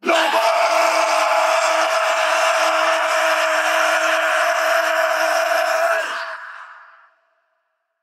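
A metal vocalist's long, harsh held scream on one steady pitch, heard on an AI-isolated vocal track. It starts abruptly, holds for about six seconds and then fades out quickly.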